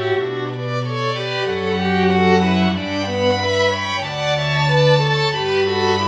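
String quartet playing a slow piece: violins carry a sustained melody over cello notes held low and changing about every second and a half.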